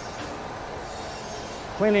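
Crankshaft grinding machine's abrasive wheel grinding a rotating crankshaft journal under a coolant flood, a steady even noise. The journal is being ground part of the way down toward size.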